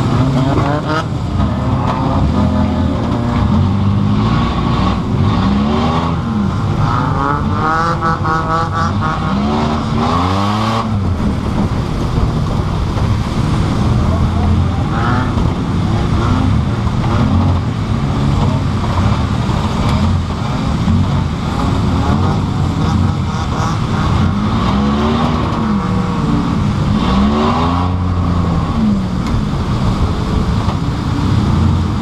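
Pontiac Grand Prix race car's engine, heard loud from inside the stripped cabin, revving up and down over and over as it is driven hard around the track.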